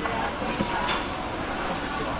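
Meat sizzling steadily on the wire mesh of a charcoal yakiniku grill as its dripping fat flares up in flames.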